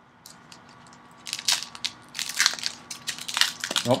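Wrapper of a Prizm Fast Break trading-card pack crinkling and crackling as it is torn open, a rapid run of crackles starting about a second in.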